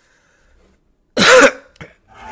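About a second of silence, then a single short cough a little after a second in.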